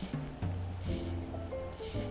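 The crown of a Boldr Venture field watch being hand-wound, winding its Seiko NH35A automatic movement smoothly: soft ratcheting rasps, twice, about a second in and near the end. Background music plays underneath.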